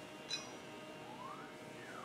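Faint, brief rustle of a cotton caftan being pulled over the head, about a third of a second in, over quiet room tone.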